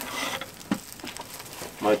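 Open wood fire crackling, with chicken sizzling on a grate above the flames; one sharper crack about two-thirds of a second in.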